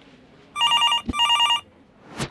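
Desk phone ringing: two short bursts of a rapid warbling electronic ring, with a brief knock between them.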